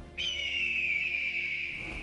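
A high, whistle-like tone that comes in suddenly and slowly slides down in pitch as it fades, over soft background music.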